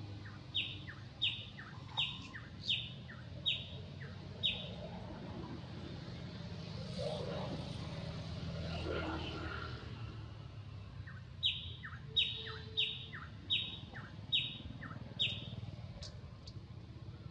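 A bird calling in a series of six short, sharp, falling notes about 0.7 s apart, twice: once near the start and again near the end. In between there are softer wavering sounds, and a steady low rumble runs underneath.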